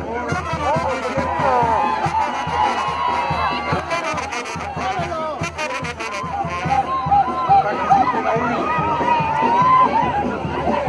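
Brass band music playing over the chatter of a dense crowd.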